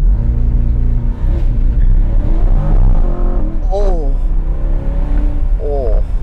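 Chevrolet C8 Corvette Z51's mid-mounted 6.2-litre V8 launching hard from a standstill under launch control. The engine comes in loudly all at once and keeps pulling hard as the car accelerates, heard from the open-top cabin.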